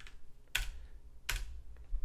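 Computer keyboard keystrokes: two distinct key presses about three quarters of a second apart and a fainter one near the end, typing a value into a field.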